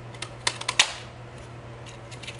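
Handheld paper punch pressed down through a cardstock strip: a quick run of sharp plastic clicks, ending in the loudest snap under a second in as it cuts.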